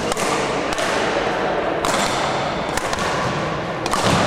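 Badminton rackets hitting a shuttlecock in a rally, several sharp hits about a second apart, echoing in a large sports hall.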